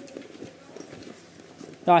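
Hands handling a fabric fishing-rod bag: faint, irregular rustling with a few light taps and clicks.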